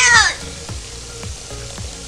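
Steady hiss of water spraying from an inflatable unicorn pool's sprayer, under a faint background music beat.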